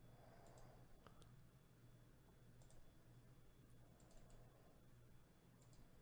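Near silence with a faint low hum and a handful of faint, scattered computer mouse clicks.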